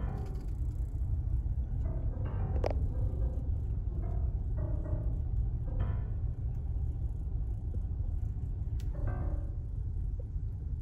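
Slow solo piano music with sparse, separate note clusters, over the steady low rumble of a car driving.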